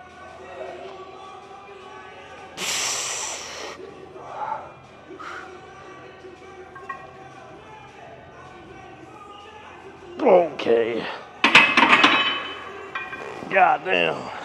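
A lifter straining through a heavy close-grip barbell bench press: a hard hiss of exhaled breath about three seconds in, then loud strained grunts near the end. Between the grunts comes a metallic clank of the loaded bar being racked, over faint background music.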